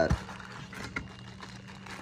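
Faint rustling of a plastic bag and cardboard box as a hand lifts a bagged part out, with a soft click about a second in.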